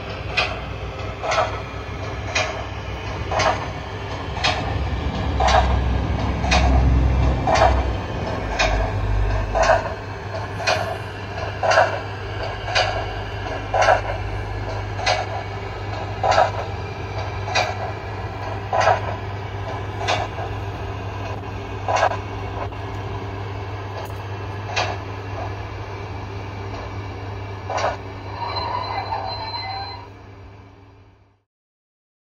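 A DCC sound-fitted O gauge GWR pannier tank model playing steam exhaust chuffs through its onboard speaker, about two a second at first and slowing to about one a second or less as the locomotive eases down, over a low rumble of the model running on the track and a steady hum.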